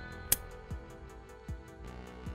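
Background music with a steady beat. About a third of a second in comes one sharp click, the RJ45 plug of an Ethernet cable latching into the router's LAN port.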